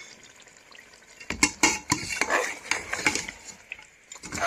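Metal spoon stirring and scraping mutton chops and onion paste in a steel pot, with repeated clinks against the pot over the sizzle of the frying masala, starting about a second in.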